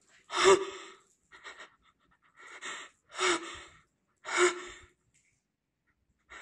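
A person's breathing close to the microphone: about five short, audible breaths roughly a second apart, then a pause.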